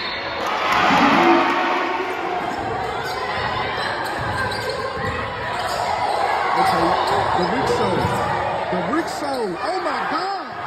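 Basketball game in a gym: the ball bouncing on the court under steady crowd noise that swells about a second in, with players and fans calling out near the end.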